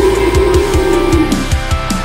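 Instrumental passage of a metalcore / pop-punk song: distorted guitars over a steady kick-drum beat and cymbals, with a held note that fades out about a second and a half in.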